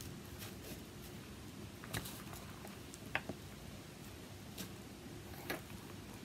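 Faint handling sounds of string being tied in a knot by hand: soft rustling with a few small, scattered clicks over a low room hum.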